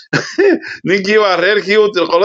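Speech: a person's voice talking without pause.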